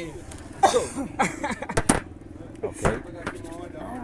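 Short voices and exclamations, then a few sharp clicks or knocks, over a steady low engine drone.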